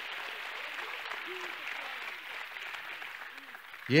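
A church congregation applauding and praising, the clapping slowly dying away toward the end, with a few faint voices among it.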